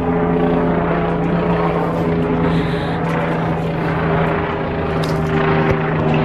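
A steady engine drone, holding a constant low pitch.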